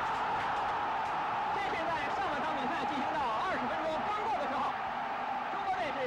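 Home stadium crowd cheering a goal: a steady, dense roar of many voices shouting at once.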